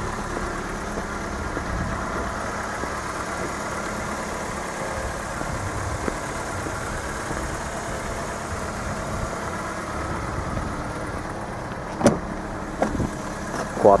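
A 2013 Ford Fiesta SE's 1.6-litre four-cylinder engine idling steadily. A couple of sharp clicks come near the end as the driver's door is opened.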